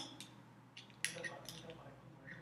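A few faint clicks and light scraping from stirring coconut oil in a small plastic container.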